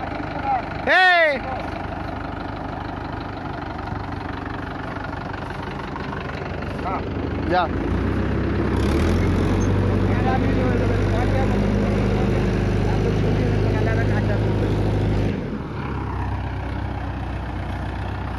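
Mahindra 575 DI tractor's four-cylinder diesel engine idling, then run up under heavy load about eight seconds in and held for some seven seconds before dropping back to idle: the tractor is bogged in mud and straining to pull free. Men shout briefly near the start.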